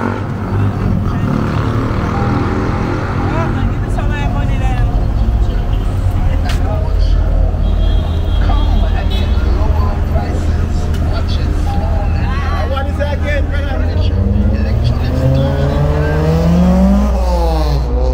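Street traffic at a town intersection: a steady low rumble of car engines with voices in the background. Near the end one vehicle's engine rises in pitch as it accelerates past, then drops away.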